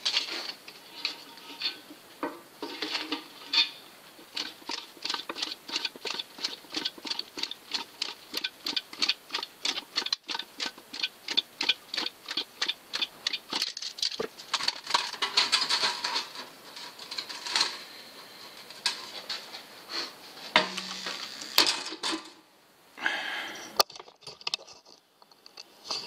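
Hand-cranked rotary sheet-metal machine clicking about four times a second as its crank is turned and a zinc strip runs through the rollers. Near the end come a few louder knocks and one sharp click.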